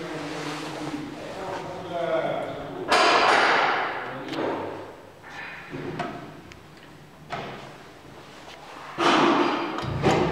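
A lift's swing landing door slams shut with a loud bang about three seconds in, followed by a few lighter knocks. A second loud bang comes near the end.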